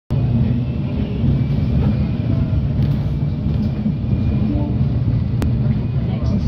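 Alexander Dennis Enviro200 MMC single-deck bus under way, heard from inside the passenger saloon: a steady low engine and road rumble, with a single sharp click near the end.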